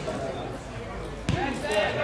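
A single dull thud of a football being kicked about a second and a half in, with players' voices calling across the pitch.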